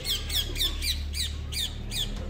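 A bird calling repeatedly: a quick, regular series of short high notes, each falling in pitch, about four a second, over a faint low hum.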